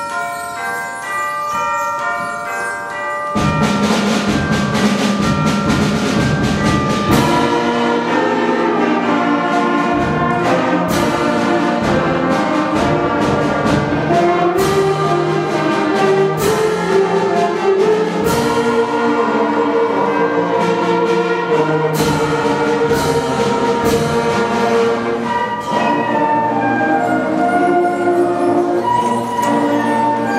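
School concert band playing a piece: it opens with a few seconds of quieter pitched notes on mallet bells, then the full band of flutes, clarinets, saxophones and brass comes in loudly about three seconds in, with percussion strikes through the rest.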